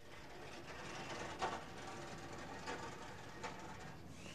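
Steady outdoor street background noise with a few faint knocks or clicks scattered through it.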